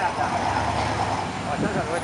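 1967 Corvette Stingray's 427 big-block V8 driving off, a steady low exhaust note that is strongest about half a second to a second and a half in, with street traffic behind it.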